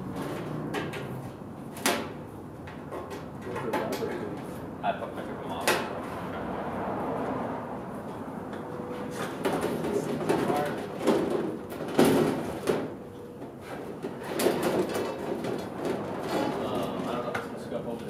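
A trailer siding panel being pushed and held against a trailer wall, with scraping and a few sharp knocks, the loudest about two-thirds of the way through, under low voices.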